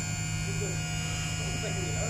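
Steady electric hum and buzz of the animal ambulance's linear lift drive running, at an even level; the lift is rising slowly.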